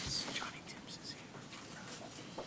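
Faint, hushed voices whispering and murmuring, with a few brief soft rustles.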